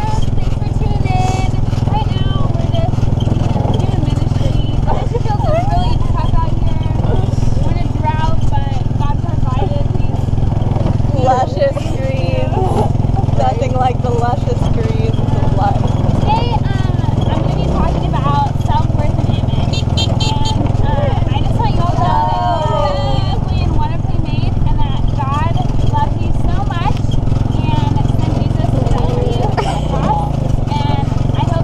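Steady low drone of a small engine pulling an open cart along a dirt road, with road rumble under indistinct chatter and laughter.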